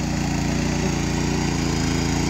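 The small single-cylinder petrol engine of a 7.5 hp power weeder running steadily under load as its tines churn through flooded paddy mud.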